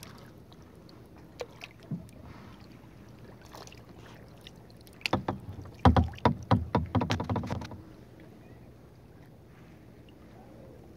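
Kayak on calm water: a low steady background with a couple of single clicks, then a quick run of loud knocks and splashes from the kayak paddle, starting about five seconds in and lasting about three seconds.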